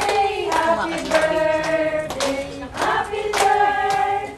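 Voices singing a song together, with hand claps in time, about two claps a second.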